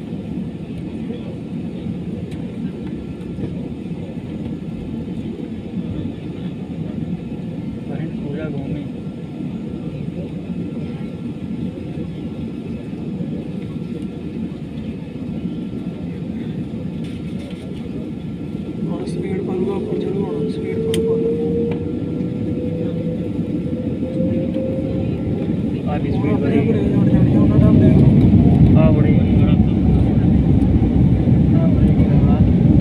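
Jet airliner heard from inside the cabin on the ground: a steady low rumble of engine and airflow. From about a third of the way in, a whine slowly rises in pitch and the rumble grows louder, louder still near the end, as the engines run up.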